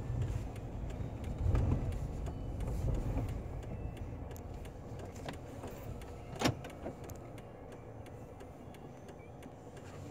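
Inside a parked car's cabin, passengers climbing into the back seat: low thuds and rumble as the car takes their weight during the first few seconds, then a single sharp click about six and a half seconds in, then a quiet steady background.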